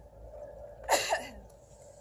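A goat's brief, loud call about a second in: two quick cries falling in pitch.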